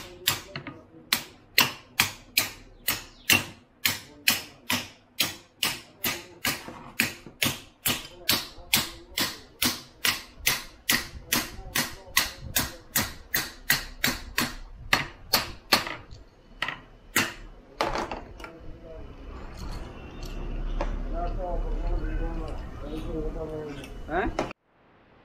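Hammer tapping metal on a bus differential's pinion bearing assembly in a steady run of sharp strikes, about two to three a second, as the bearing is set on the pinion shaft. The taps stop a few seconds before the end and a steadier mechanical noise grows louder.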